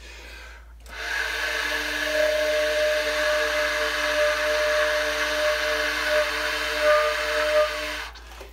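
Tenor saxophone subtoning its highest note at very low volume, starting about a second in: mostly breath noise rushing through the horn, with a faint, thin held note underneath. The airiness comes from the subtone exercise, with the lower jaw barely on the reed and very little pressure.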